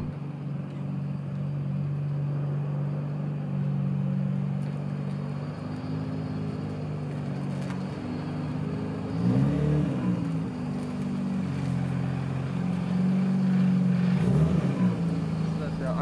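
Nissan Skyline GT-R R34's twin-turbo inline-six (RB26DETT) idling steadily, with two short rev blips, one about halfway through and one near the end.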